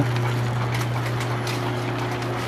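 Overhead line shafts and flat-belt pulleys running, with a steady low hum and faint irregular ticking.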